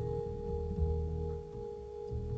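Live jazz quartet in an instrumental passage: one steady, pure held note sounds over low upright double bass notes.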